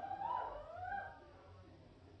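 A brief gliding vocal sound from a person in the first second, then a quiet room with a faint low hum from the stage equipment.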